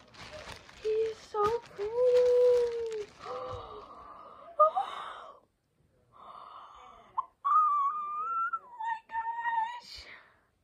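A girl's wordless, drawn-out squeals and "ooh" sounds of delight, held for a second or more each and pitched higher in the second half. In the first couple of seconds a plastic bag crinkles as a plush toy is pulled out of it.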